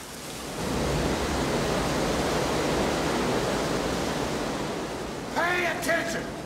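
Steady rushing noise from a film soundtrack, fading in over the first second and then holding level, with a man's voice breaking in near the end.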